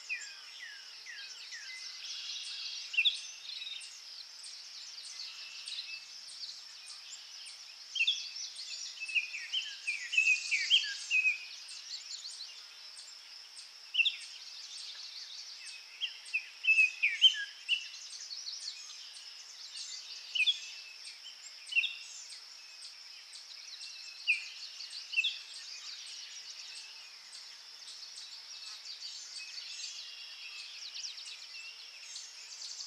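Songbirds chirping and singing in short, quick phrases over a steady high-pitched hiss. The song is busiest and loudest about ten seconds in and again between sixteen and eighteen seconds.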